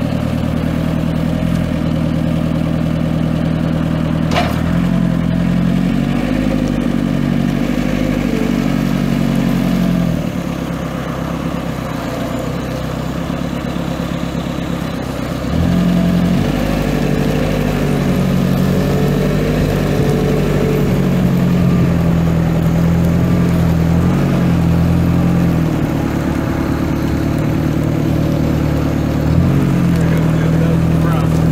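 A Terex 2306 telehandler's Perkins 700 Series four-cylinder diesel engine running, its speed rising and falling several times: up about four seconds in, down near ten seconds, and up again around sixteen seconds. There is a single sharp click about four seconds in.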